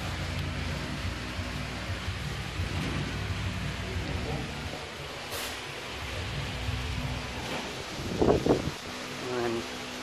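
Steady low workshop hum under a rumbling haze of handling noise on a handheld microphone. There is a single click about five seconds in, and a short, louder voice-like burst about eight seconds in.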